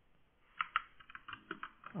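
Typing on a computer keyboard: a quick run of light keystrokes starting about half a second in, typing out a short word.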